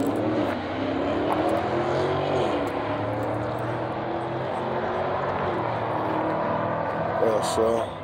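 A car engine running steadily with a droning tone, its pitch rising and falling a little, until it drops away near the end.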